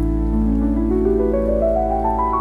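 Solo piano playing a slow rising arpeggio, single notes climbing one after another over a held bass note, with a steady rain sound mixed in underneath.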